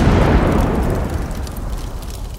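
Explosion-like boom sound effect accompanying a fiery title card: a sudden loud hit at the start, then a rumble that fades away over about two seconds.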